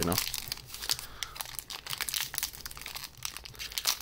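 A foil trading-card pack wrapper crinkling and tearing as it is pulled open by hand, a dense run of small, sharp crackles.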